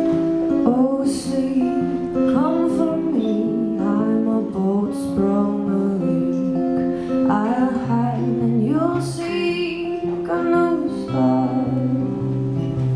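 Acoustic guitar played live with a woman's singing voice over it in a slow ballad, the voice sliding between long held notes.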